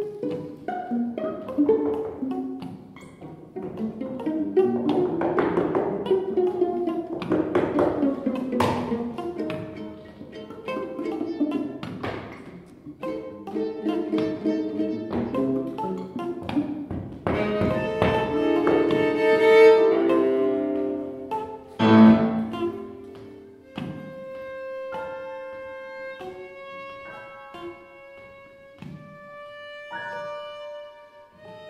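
Free-improvised music for two violas, guitar with effects, untuned piano and electric bass: a dense, shifting texture of bowed and plucked notes with many sharp attacks. A loud hit comes about 22 seconds in, after which the sound thins to a few long held notes.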